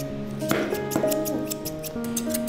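Background instrumental music with held notes and a quick ticking beat.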